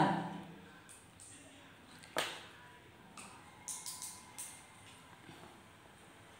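A quiet room with a single sharp tap about two seconds in and a few short, soft clicks around four seconds.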